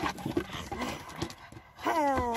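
Pugs shuffling about and making short snuffling noises, with small clicks of claws on wooden deck boards. Near the end a long vocal call starts, its pitch falling.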